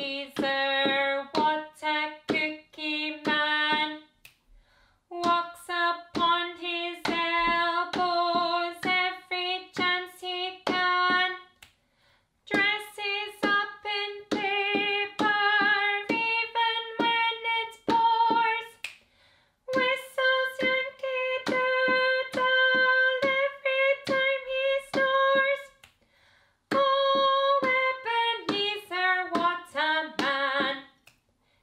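A woman singing a children's counting song unaccompanied in four phrases with short pauses between them, while a drumstick taps out a steady rhythm of sharp taps under the sung notes.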